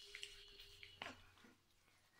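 Near silence, with a few faint, soft sticky clicks in the first second and a half, the clearest about a second in: hands pressing slimy sheet-mask essence into the skin of the face.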